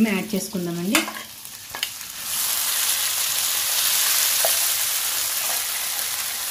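Grated raw mango dropped into hot oil and tempering in a kadai, sizzling. The sizzle starts suddenly about two seconds in, just after a single click, and then holds steady.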